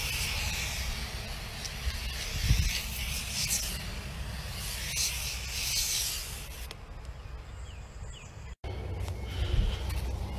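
Aerosol can of foaming glass cleaner spraying onto a vehicle window: a hiss that swells and eases several times over about the first seven seconds, then stops. A steady low rumble runs underneath.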